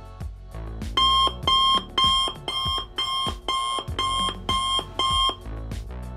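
Smartphone alarm beeping, about nine short high beeps at about two a second, stopping shortly before the end, over background music.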